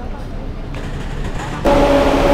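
Low rumbling street noise, then, about one and a half seconds in, a louder steady drone with a few held pitches from a city bus idling close by.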